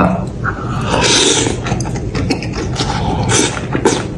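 A man eating up close: slurping and chewing a mouthful of chili-oil tripe shreds, with a hissing slurp about a second in and wet clicking mouth noises after it.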